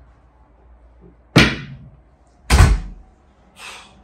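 A door banging shut: two heavy thuds about a second apart, the second one louder, then a softer rustle near the end.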